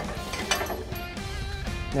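Light metallic clicking and clinking as a steel suspension link bracket is fitted to the frame, over background music.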